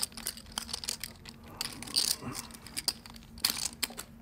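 Poker chips clicking as they are handled at the table, in irregular light clicks over a faint steady hum.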